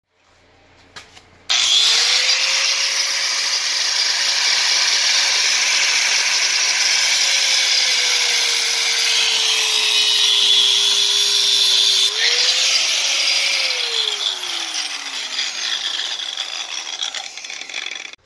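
Angle grinder spinning up, then cutting through rusty steel around an old ball joint on a front steering knuckle, grinding loudly as it throws sparks. Its whine sags under load, stops and spins up again about two thirds of the way in, then falls away as the motor winds down near the end.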